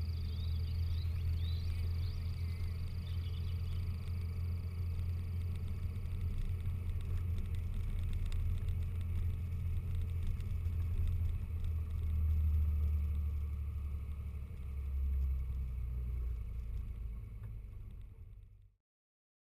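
An off-road vehicle driving along a bumpy dirt track. The engine and track noise make a steady low rumble, picked up close by a camera mounted on the vehicle, and it swells a little about twelve seconds in.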